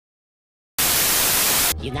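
A loud burst of static hiss, about a second long, starting sharply out of dead silence and cutting off just as abruptly, used as an edit transition. A woman starts speaking near the end.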